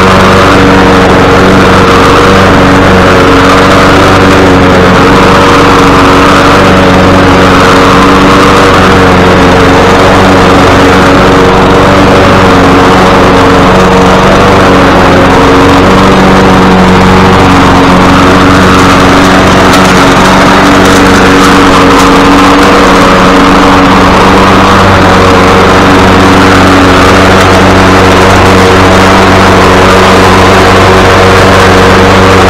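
Poulan gas walk-behind lawn mower engine running at a steady speed while cutting grass, loud and close to the microphone.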